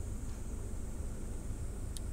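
Steady low background rumble with a thin, even high-pitched hiss; no distinct event stands out.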